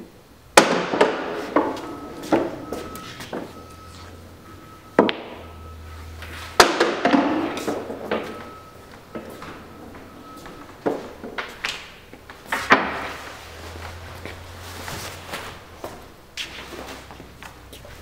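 Pool balls knocking on a pool table: a cue shot about half a second in, then a series of sharp clacks and knocks, each with a short rattle, as balls strike one another and the cushions and drop into the pockets.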